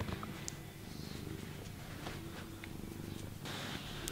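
Tabby cat purring steadily while being stroked.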